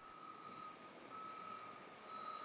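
A faint, steady high-pitched tone that dims briefly a couple of times, over low background noise.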